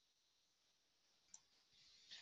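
Near silence, broken by one faint, sharp click a little past halfway: the click of the presenter advancing the slide.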